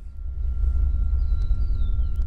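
Low steady rumble of an idling safari vehicle, with a few faint bird chirps above it.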